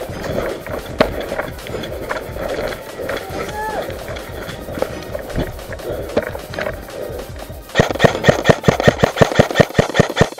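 Running footsteps and rustling through grass, then from about eight seconds in an airsoft rifle fires a rapid string of sharp shots, several a second.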